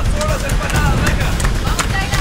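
Faint voices over a steady low rumble of background noise.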